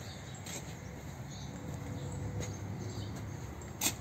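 Faint background noise with a few light clicks, and a sharper click a little before the end.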